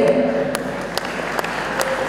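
A crowd applauding: many hands clapping in a dense, irregular patter.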